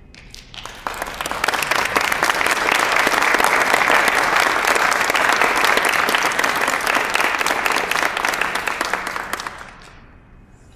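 Audience applause, with one person clapping close by; it starts about a second in and dies away shortly before the end.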